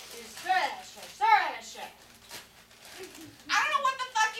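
Voices in untranscribed, speech-like sounds: two short rising-and-falling vocal sounds in the first two seconds, then a louder run of quick voiced sounds starting near the end.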